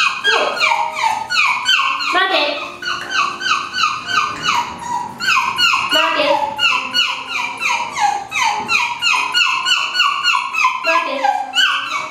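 A small poodle-type dog whining in a quick, almost unbroken run of short, high, falling yips, about three or four a second.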